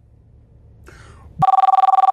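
Telephone ringing: a two-tone electronic ring with a fast warble, starting about one and a half seconds in, the second ring of a call.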